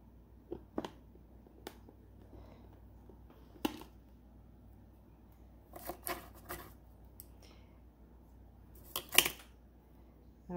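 Scattered small clicks and light rustles of handling adhesive silver studs: picking each one up and pressing it onto a hard plastic clutch shell, with a louder pair of clicks near the end.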